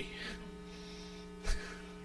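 Steady low electrical mains hum from the sound system, with one short thump about one and a half seconds in.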